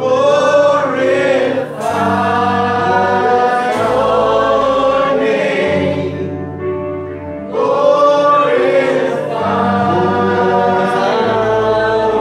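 Live church worship band playing a worship chorus: a man sings the lead into a microphone in long held notes over keyboard, electric guitar and a sustained bass line.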